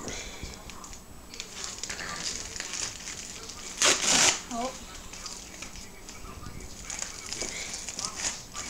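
Padded plastic mailer being torn open by hand, crinkling and rustling, with one loud rip about four seconds in.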